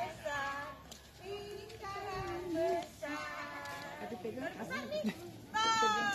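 Voices singing in drawn-out, sustained notes, like a sung children's song. Near the end a louder voice slides downward in pitch.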